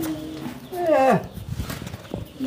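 An elderly man's wordless vocal cries: a held note at the start, then a long wail falling steeply in pitch about a second in. He cannot form words, so he calls out in these sounds.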